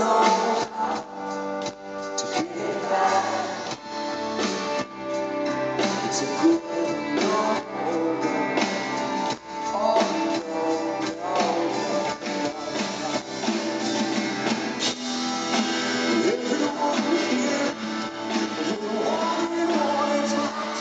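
Live rock band playing through an arena PA, recorded from the crowd: electric guitar and band, with a male lead vocal singing into a stand microphone.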